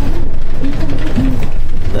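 Steady low rumble of a moving Hyundai city bus heard from inside the cabin: drivetrain and road noise, with faint voices in the background.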